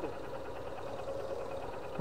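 Small motorcycle engine idling steadily and quietly.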